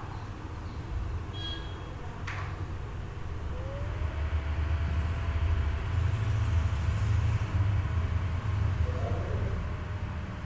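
Low rumbling background noise picked up by an open microphone on a video call. It swells louder about four seconds in. A thin steady tone slides up partway through and holds.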